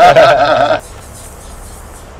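A man laughing loudly in a high, wavering, bleat-like voice that cuts off suddenly under a second in.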